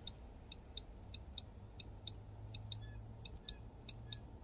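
A tiny micro switch clicking faintly as its metal lever is pressed and released by finger, about three clicks a second. The cleaned switch is now clicking in and out as it is supposed to.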